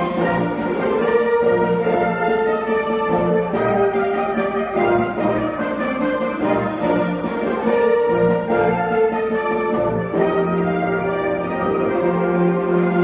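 School concert band (wind ensemble) playing, with brass-led sustained chords over regular percussion strokes.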